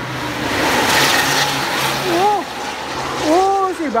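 A road vehicle passing at speed on the toll road: a rush of engine and tyre noise that swells and fades within the first two seconds over a steady low hum. Later come two short calls that rise and fall in pitch.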